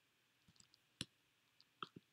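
Faint, scattered clicks of a computer mouse: a few light ticks, one sharper click about a second in, and two more near the end, with near silence between them.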